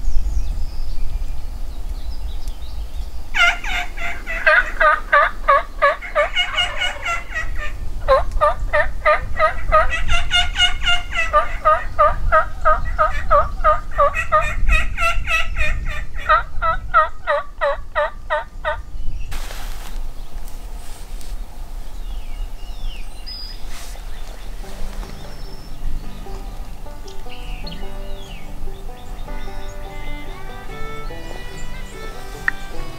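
Turkey gobbling: a rapid rattling series that rises and falls in pitch, running in several linked bouts for about fifteen seconds from about three seconds in. Faint music comes in near the end.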